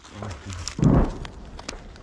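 Scissors cutting through a wounded soldier's uniform fabric, heard as a few faint sharp snips, with a short muffled low sound about a second in.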